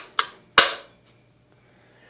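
Toggle switches on the front panel of a ten-tube linear amplifier being flipped off: three sharp clicks within the first second, the last ringing briefly, as the amplifier is switched off.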